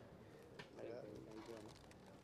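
Near silence between announcements, with a faint, distant voice-like murmur around the middle.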